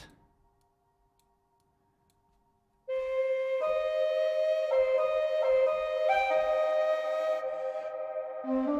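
Sampled dongxiao, the Chinese end-blown bamboo flute, played through a very long reverb. After about three seconds of near silence, a slow phrase of held notes begins, stepping up and down between pitches.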